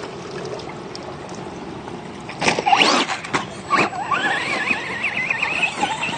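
Radio-controlled basher truck driving out of a rocky creek: a steady rush at first, then knocks and rattles of the chassis over rocks about halfway in, and a rising, wavering whine of its motor as the throttle works.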